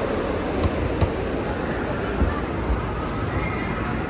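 Steady arcade din with two sharp knocks about half a second apart near the start and a couple of low thuds about halfway through, from basketballs striking the rims, backboards and floor of an arcade basketball shooting game.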